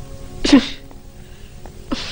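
A man sneezing: one sharp, loud sneeze about half a second in, and a shorter, weaker one near the end, each falling quickly in pitch.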